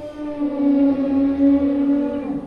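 Digital T-Rex roar sound effect played by the augmented-reality dinosaur: one long, loud, steady roar held at a single pitch.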